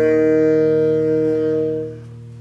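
Saxophone holding one long final note over a sustained bass guitar note; the saxophone fades out near the end while the bass note rings on.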